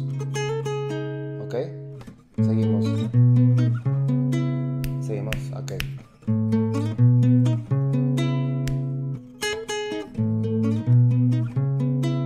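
Acoustic guitar played slowly, each chord picked as an arpeggio over a ringing bass note, moving to a new chord about every four seconds.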